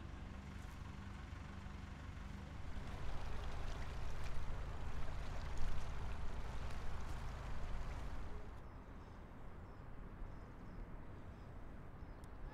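Narrowboat's diesel engine running slowly at low speed, a steady low hum, with a louder rushing noise from about three to eight seconds in.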